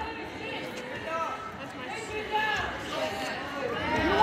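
Background voices of spectators and coaches talking and calling out around a gymnasium, with no one speaking close up.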